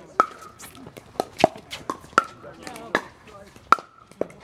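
Pickleball rally: paddles striking a hollow plastic ball, sharp pocks about every three-quarters of a second, each with a brief ringing tone, and fainter knocks in between.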